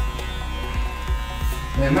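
Wahl Senior electric hair clippers running with a steady buzz, cutting hair clipper-over-comb at the nape. Background music with a regular beat plays underneath.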